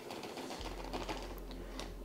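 Soft scattered clicks and ticks of a plastic mixing bowl and a zip-top plastic bag being handled as the marinade is emptied into the bag. A low steady hum starts suddenly about half a second in.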